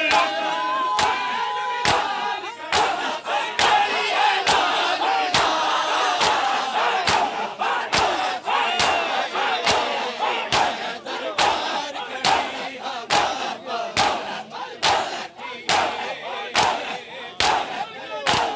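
A crowd of men doing matam, striking their chests together in a steady beat about twice a second. The sharp slaps ring out over loud shouted chanting from the mourners.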